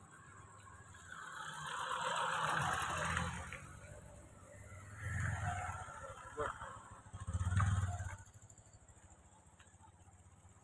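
Motor vehicles passing on a road. A rush rises and fades from about one to three and a half seconds in, then two shorter low rumbles follow around five and seven and a half seconds.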